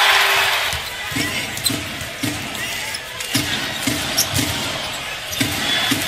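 Arena crowd cheering that dies down about a second in, then a basketball dribbled on a hardwood court, about two bounces a second, over crowd murmur.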